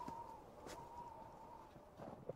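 Near silence: faint background ambience with a faint steady thin tone and one soft click about two-thirds of a second in.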